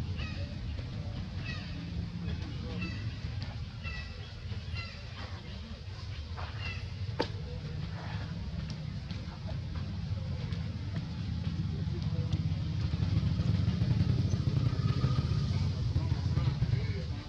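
Steady low rumble like a passing or idling motor vehicle, growing louder in the last few seconds. Faint short high chirps come in the first five seconds, and a single sharp click about seven seconds in.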